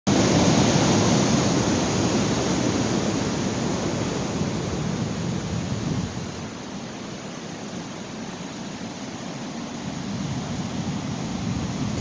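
Ocean surf breaking and washing up a dark sand beach: a steady rush, loudest at the start, easing off about six seconds in and building again toward the end.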